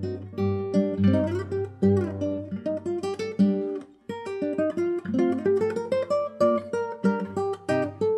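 Nylon-string classical guitar plucked fingerstyle with the flesh of the fingertips, no nails, tuned down a whole step. A melodic passage of single notes runs over a ringing low bass, with a short break about halfway through.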